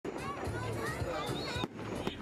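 Aerial fireworks going off, with a few dull thumps, under a background of voices and music.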